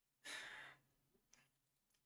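A person's short sigh, an audible breath out lasting about half a second, followed by a faint click a little after one second in.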